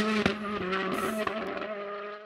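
Hyundai i20 Coupe WRC rally car's turbocharged four-cylinder engine running hard as the car pulls away, fading steadily, with a few sharp cracks along the way.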